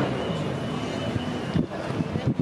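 Steady outdoor noise with wind on the microphone, and a few brief handling bumps near the end.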